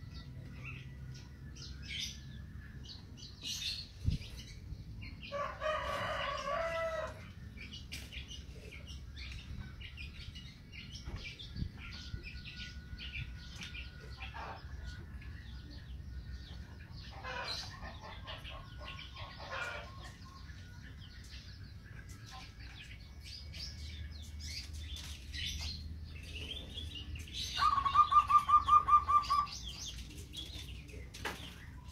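Zebra dove (perkutut) cooing from a cage, a pulsed phrase about seventeen seconds in, with other birds chirping throughout. There is a pitched call burst about five seconds in, and near the end a loud, rapid run of about a dozen pulsed notes.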